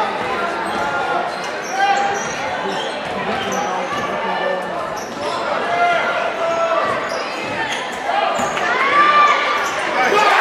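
Basketball bouncing on a hardwood gym floor during play, with players, coaches and spectators shouting over one another, echoing in the large gym.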